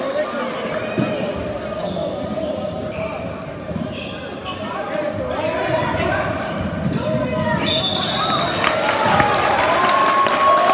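A basketball bouncing on a hardwood gym floor during play, with crowd chatter filling the large hall.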